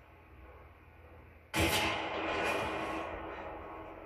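Film soundtrack: a sudden loud hit about one and a half seconds in, fading away over the next two seconds.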